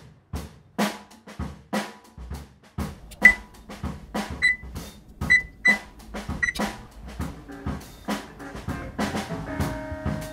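Background music with a steady drum beat of about two hits a second; short high pings sound over it in the middle, and held notes join near the end.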